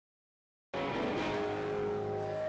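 Silence, then a little under a second in, a live rock band cuts in abruptly mid-song, guitars ringing on held chords.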